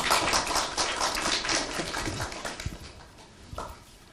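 Audience applauding; the clapping dies away about three seconds in.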